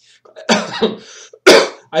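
A man clears his throat, then gives one sudden, loud cough shortly before the end.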